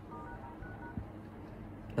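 iPhone XR dial-pad keypad tones: a few quick, faint dual-tone beeps in the first second as the *#06# code is keyed in to bring up the phone's IMEI numbers.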